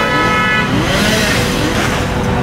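Steady background noise with a short steady tone over it for the first half second or so, and faint wavering sounds underneath.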